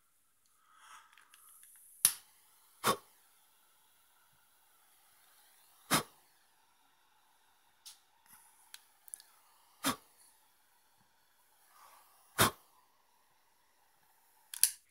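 Five sharp, loud clicks a few seconds apart, over a faint steady hiss.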